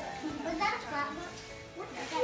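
Young children talking and calling out over background music.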